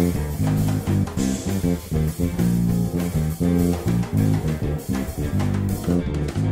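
Fender Jazz Bass playing a busy jazz-fusion line of quick, short notes over a backing track with drums.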